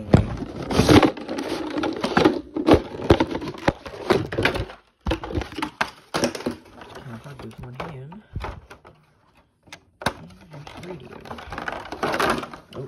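Stiff clear plastic clamshell packaging crackling and snapping in quick irregular bursts as it is pried and pulled apart, densest in the first few seconds.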